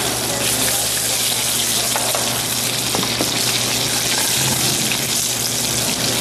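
Sablefish (black cod) fillets sizzling steadily in hot sesame oil in a frying pan over a medium-high flame, just turned to the skin side after searing the flesh side.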